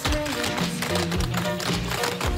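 Upbeat dance music with the rapid taps of a line of cloggers' shoes striking a wooden stage floor in time with it.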